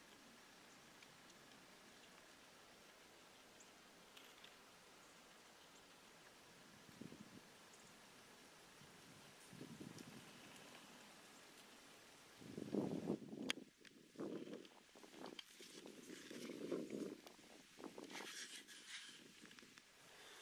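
Near-silent outdoor quiet, then from about twelve seconds in a run of muffled rustles and knocks close to the microphone, with one sharp click.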